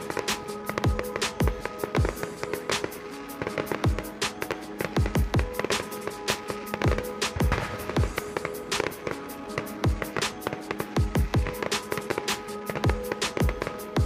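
Music with a steady, heavy beat and held tones, with the sharp bangs and crackle of aerial fireworks bursting over it.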